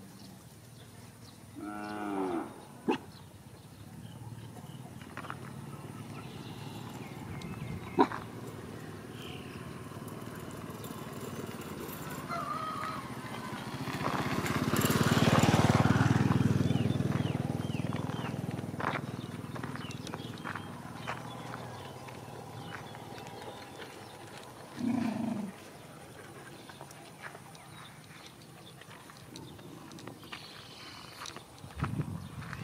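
Animal calls: a short pitched call about two seconds in, a long low call that swells to the loudest point in the middle and slowly fades, and another short low call near the end.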